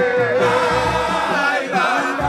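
Men singing a devotional chant together: a lead voice into a microphone with a chorus of men's voices, one long held note running under wavering lines above it.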